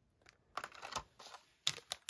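Stiff plastic blister packaging being handled: a run of short crackles and clicks, with the sharpest click near the end.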